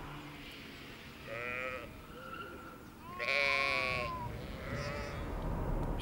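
Sheep bleating: three quavering bleats, a short one about a second and a half in, a brief one just after two seconds, and the loudest and longest, about a second, just after three seconds.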